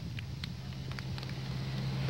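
A steady, low engine hum that grows slightly louder, with a few faint clicks.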